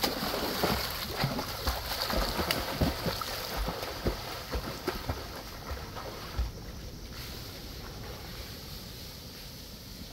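Splashing of a swimmer's kicks and arm strokes in a pool: irregular slaps and sploshes of water, which die away after about six and a half seconds to a quieter, steady hiss.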